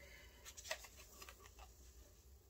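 Faint rustling and a few light ticks of fingers picking at sticky tape on a small cardboard product card.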